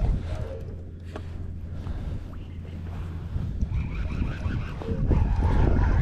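A conventional fishing reel being wound against a hooked rockfish that pulls back, with light irregular clicks over a steady low rumble.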